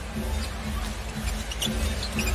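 Live NBA arena sound during play: crowd noise with arena music over it, and a few short sneaker squeaks on the hardwood court.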